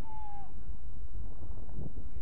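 A brief high-pitched shout from a player on the field, slightly falling in pitch, over a steady low wind rumble on the microphone.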